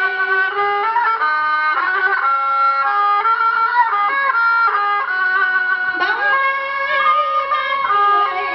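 Instrumental music with no voice: one melody line played in long held notes that step up and down, with a short rising slide about six seconds in.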